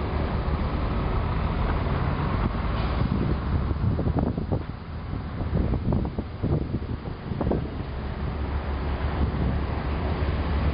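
Wind blowing across the microphone, a steady low rumble with a cluster of short irregular gusts in the middle.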